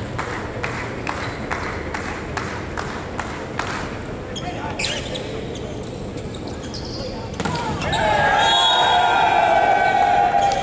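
Sharp thuds about three a second for the first four seconds, then single hits of the volleyball in play. The rally ends in loud shouting from the players about eight seconds in.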